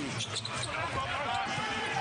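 Live basketball game on a hardwood court: the ball bouncing and sneakers squeaking as players scramble for a rebound under the rim.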